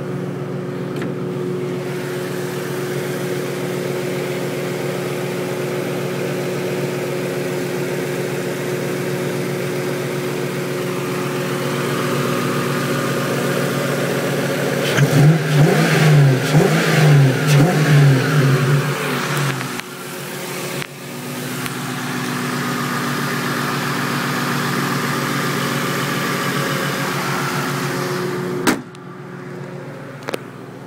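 Ford Mustang's engine idling steadily, blipped several times in quick succession about halfway through, the revs rising and falling back to idle each time, then settling back to a steady idle. A sharp click sounds near the end.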